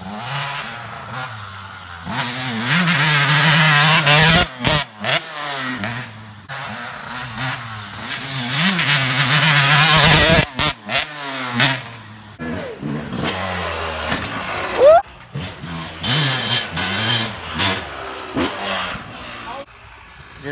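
Dirt bike engines revving hard and dropping back as bikes ride past close by on a dirt track, loudest about three seconds in and again around ten seconds in, with several abrupt cuts in the sound.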